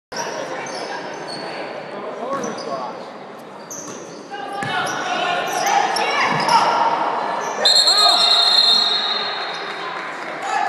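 Basketball game in a gymnasium: sneakers squeaking on the hardwood floor, the ball bouncing and voices from players and spectators. About eight seconds in, a referee's whistle blows one long shrill blast lasting nearly two seconds, stopping play.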